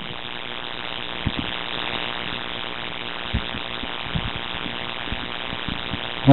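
Steady electrical hum and hiss with no speech, broken by a few faint knocks.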